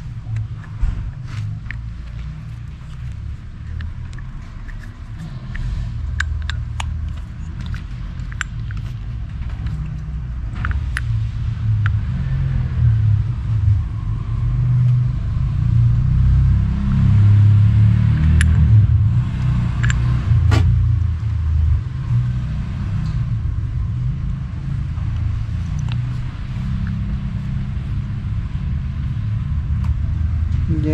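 Light clicks and taps of motorcycle brake pads and a disc-brake caliper being handled while the pads are fitted, over a continuous low rumble that swells around the middle.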